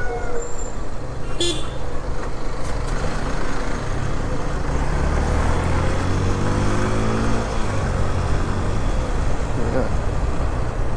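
Motorcycle engine running under way in town traffic, with steady wind rush on the microphone; around the middle the engine note drops as the rider eases off the throttle. A brief sharp sound cuts through about one and a half seconds in.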